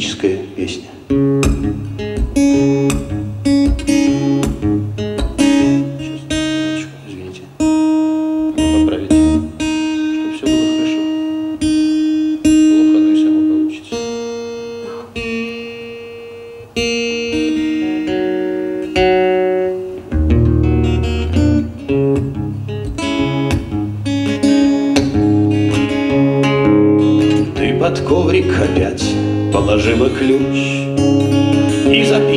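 Nylon-string classical guitar played solo, a fingerpicked melody of plucked notes over a moving bass line, with no singing.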